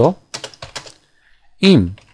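Computer keyboard being typed on: a short, quick run of keystrokes in the first second.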